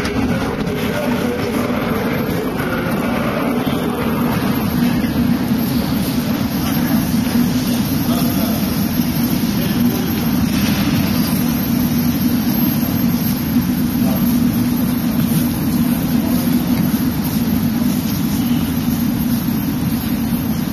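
Metro station ambience: a steady low rumble and hum, with passengers' voices mixed in.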